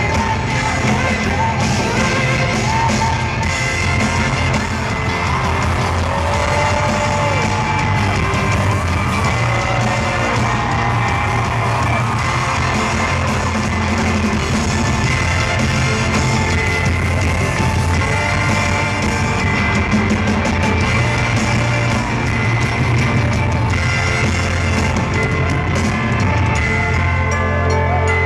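Live band playing an upbeat pop song with a horn section, electric guitars, bass and drums, with voices singing and yelling over it, heard from among the audience in a large arena.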